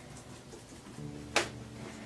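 Quiet wiping and handling of a wet silicone doll with a washcloth in a plastic baby bathtub, with one sharp knock about one and a half seconds in.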